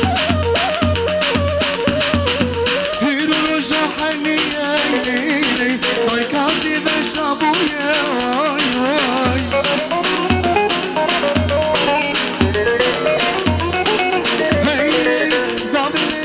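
Live Kurdish wedding dance music: a wavering melody line over deep drum beats and fast rattling percussion.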